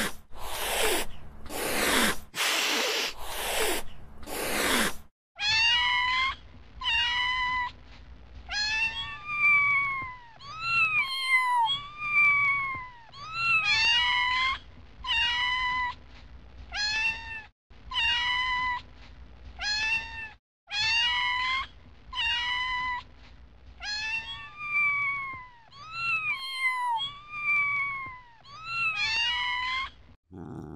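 A domestic cat meowing over and over, about one meow a second, each call rising then falling in pitch. The first five seconds hold a run of short harsh noisy bursts instead.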